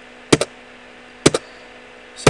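Enter key on a computer keyboard pressed twice, about a second apart. Each stroke is a quick double click of press and release, and each press confirms a recognised field and moves on to the next.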